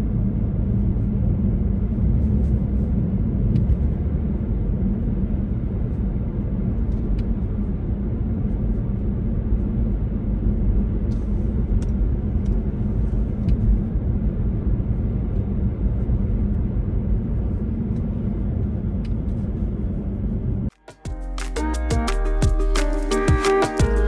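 Steady rumble of road and tyre noise inside a car driving on a snow-covered road. Near the end it cuts off suddenly and music with a beat starts.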